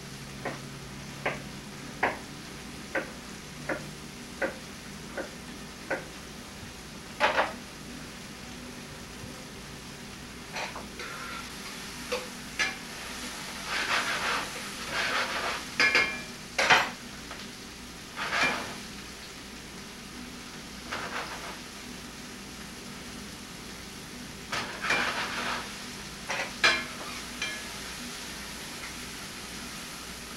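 Sliced peppers and mushrooms sizzling in a frying pan while a utensil stirs and scrapes them. Evenly spaced taps on the pan come in the first six seconds, and louder bursts of stirring follow in the middle and near the end.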